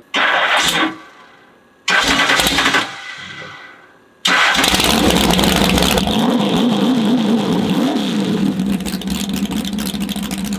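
Big-block V8 jet boat engine with open headers being started: it fires briefly twice and dies away, then catches about four seconds in and keeps running loudly with a slightly wavering note.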